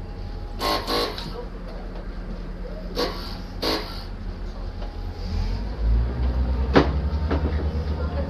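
Diesel train's engine running with a steady low hum, with a few brief higher-pitched sounds about a second in and around three seconds in. About five and a half seconds in the engine gets louder with a fast pulsing throb, followed by a sharp click.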